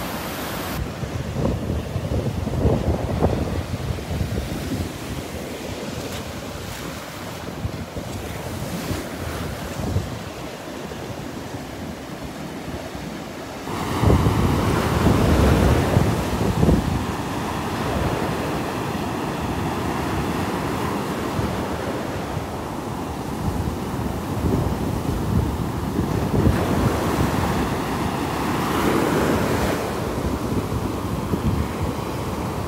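Gulf of Mexico surf breaking and washing up the beach, with wind buffeting the microphone. The surf and wind get louder about halfway through.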